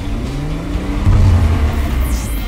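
A car engine accelerating, its pitch rising over the first second, mixed with background music.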